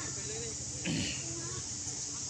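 Outdoor ambience: a steady high-pitched hiss with faint, wavering voices in the background, and one short, louder sound about a second in.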